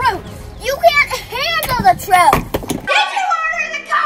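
Children's voices speaking loudly and excitedly, over a low background rumble that stops abruptly about three seconds in.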